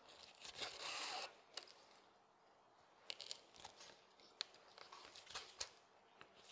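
Faint hand saddle stitching of leather: thread drawn through the stitching holes with a soft rasp about a second in, then a few light ticks of needles and awl against the leather.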